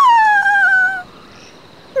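A woman's high character voice singing one long note that slides downward and fades after about a second, ending her "la la la" tune.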